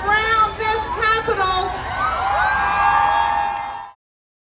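Voices singing in short held phrases, then several voices sliding up into one long held note about halfway through; the sound cuts off abruptly just before the end.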